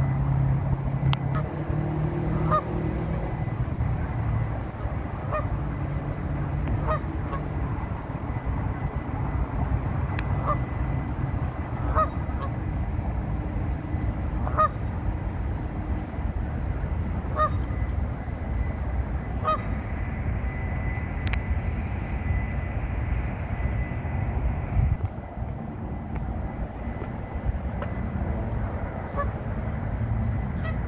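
A flock of Canada geese giving short honks every second or two, thinning out near the end, over a steady low background rumble.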